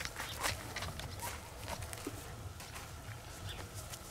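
A heavy draft horse walking on bare, dry dirt as she is led on a rope: a few soft, irregular hoof steps.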